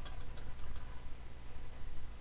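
A quick run of about five computer keyboard keystrokes in the first second, spaces being typed to push a line of text to the right, then only faint background.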